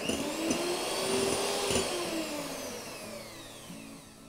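Electric hand mixer running, its twin beaters whisking eggs and sugar in a glass bowl into a frothy mass; a steady motor whine that grows fainter toward the end.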